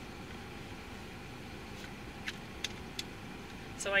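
Steady low rumble inside a car's cabin, with two faint clicks a little past halfway; a voice starts right at the end.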